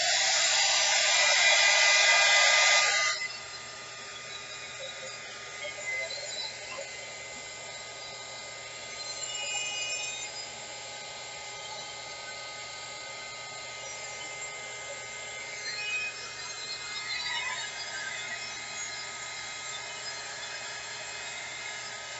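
Handheld craft heat gun blowing: a loud, steady rush of hot air for about three seconds, then falling off sharply to a much quieter steady hiss for the rest.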